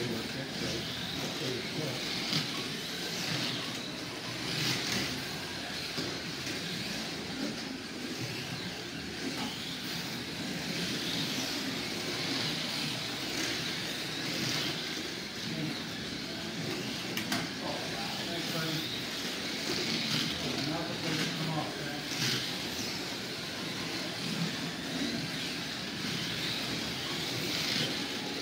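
Trans Am-class slot cars racing on a multi-lane track: their small electric motors whine steadily, swelling every couple of seconds as cars pass close by, over indistinct voices.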